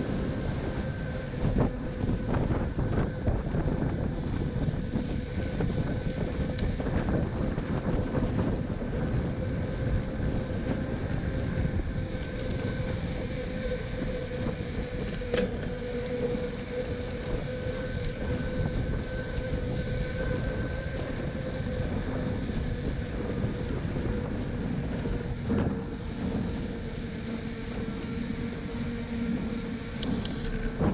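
Wind rushing over the microphone of a camera carried on a moving bicycle, with tyre rumble on the paved trail. A thin steady whine runs through it, and a few short knocks come from bumps in the path.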